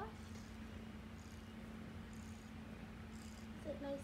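Kitten purring softly as she settles into a fuzzy blanket, with a few faint rustles of the fabric.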